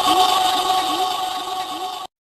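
Electronic DJ sound effect: steady high tones over a short rising-and-falling chirp that repeats about three times a second. It fades slightly and cuts off abruptly at the end.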